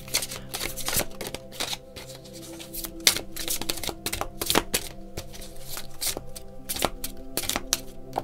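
A deck of tarot cards being shuffled by hand: a run of quick, irregular card flicks and slides, with the sharpest snap about three seconds in.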